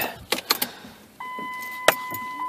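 A few light key clicks, then a steady electronic warning tone from the 2005 Dodge Caravan's dashboard chime starts about a second in and holds one pitch. A sharp click near the end.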